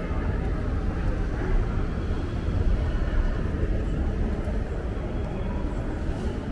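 Shopping-mall interior ambience: a steady low rumble with faint, indistinct voices in a large hall.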